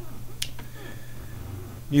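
A single sharp click about half a second in, over a steady low hum, in a pause between a man's words.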